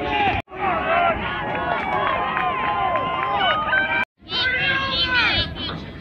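Many spectators' voices shouting and cheering at once, urging on runners. The sound cuts out abruptly twice, about half a second in and about four seconds in.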